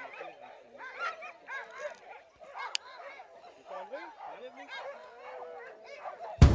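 A team of sled dogs in harness whining and yipping, with many short cries rising and falling in pitch one over another. It is the restless noise of dogs held back before a race start.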